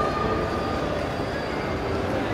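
Steady rumbling ambience of a large indoor shopping mall, with a few faint steady tones over it and no distinct events.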